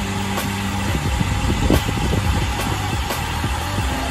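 Steady wind noise on the microphone and road rumble from a bicycle rolling over asphalt, with a few light clicks.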